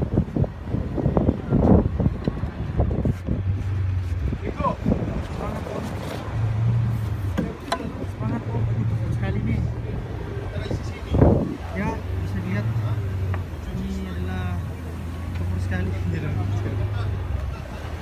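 A boat's engine running with a steady low hum as the boat moves through the water, while wind buffets the microphone in gusts; the strongest gust comes about eleven seconds in.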